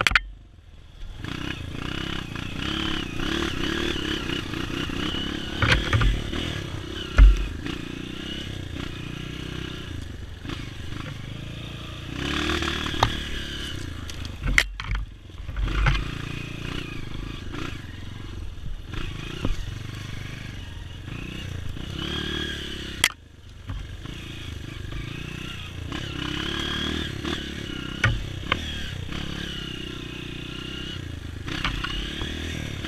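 Honda CRF230 dirt bike's single-cylinder four-stroke engine revving up and down as it is ridden along a rough trail, its note dropping away briefly right at the start and again about two-thirds of the way through. Several sharp knocks and clatter cut in, the loudest about seven seconds in.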